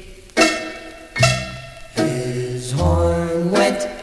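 A 1950s rock-and-roll novelty record playing from a 45 rpm single on a turntable, in a short break between the sung lines: sharp accented chords about every 0.8 s, then a longer held chord with a deep bass note near the end.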